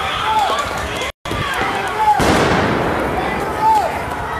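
Shouting voices, with a sudden bang about two seconds in that trails off in a noisy rush lasting about a second. The sound cuts out completely for a moment about a second in.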